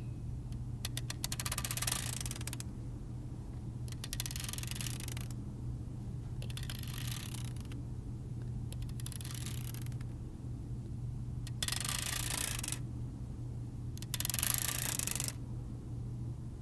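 A pen scraped over a spiral-bound notebook in six separate strokes, each about a second long, the first beginning with a quick run of ticks, all over a steady electrical hum.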